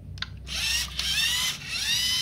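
LEGO Mindstorms EV3 robot's electric drive motors whining as it drives off, the pitch rising as they spin up, with a brief stop and restart near the end. A small click of the brick's button comes just before the motors start.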